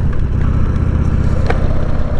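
Harley-Davidson Sportster 883's air-cooled V-twin engine running steadily while the bike is ridden, with a deep, even pulsing beat. A single sharp click comes about one and a half seconds in.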